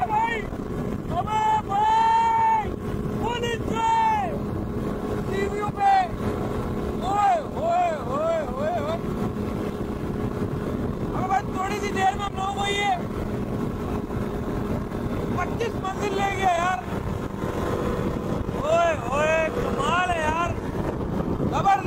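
Paramotor engine running steadily in flight, with wind on the microphone. Over it a voice calls out in drawn-out cries that rise and fall in pitch, in short clusters every few seconds.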